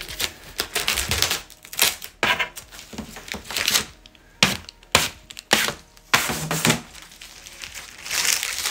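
Blue protective plastic film being peeled off a 2 mm acrylic sheet, crackling and crinkling in short irregular bursts as it pulls away.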